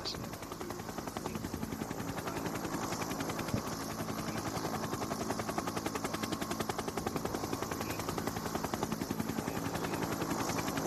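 Helicopter rotor chopping at a rapid, even beat.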